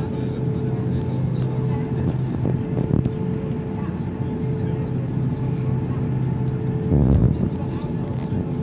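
Cabin noise over the wing of an Airbus A330-200, its General Electric CF6-80E1 turbofan engines running steadily with a constant hum. A brief low thump about seven seconds in.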